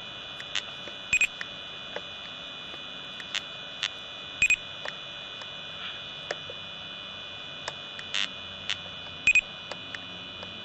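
Laser speed gun firing at a car: a steady high electronic tone, with short sharp beeps and clicks over it. The three loudest beeps come about a second in, near the middle and near the end, in line with three laser shots.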